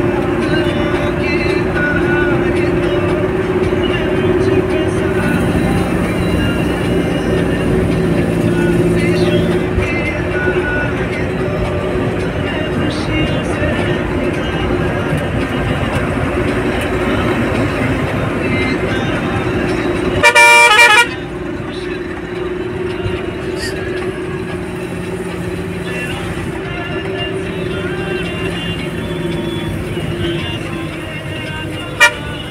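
Steady engine and road noise from inside a moving vehicle on the road, with one loud horn blast lasting under a second about twenty seconds in.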